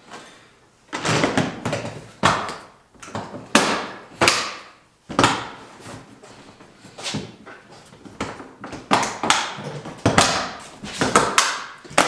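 Large hard plastic rifle case being shut: its lid is lowered and pressed down, and the case is fastened, giving a dozen or so separate plastic clunks and knocks.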